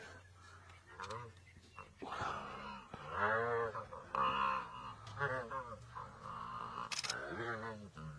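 Young hippo giving a series of about six wavering, pitched distress cries while being attacked by hyenas.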